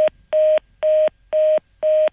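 Telephone busy tone after a dropped call: one steady beep repeating about twice a second, heard over the band-limited phone line. It is the sign that the guest's call has been cut off.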